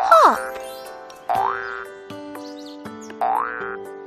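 Cartoon boing sound effects marking a child's hops: a falling springy glide at the start, then two rising ones about a second in and about two seconds later, over light children's background music.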